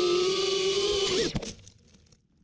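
Mini FPV racing quadcopter's motors running at a steady pitch, then dipping with a knock as the quad hits the leaf litter about a second and a half in. The sound stops abruptly after that.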